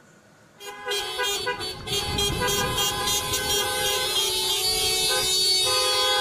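Several car horns honking together in long, held blasts over a low rumble, starting about half a second in. The mix of horn pitches shifts near the end.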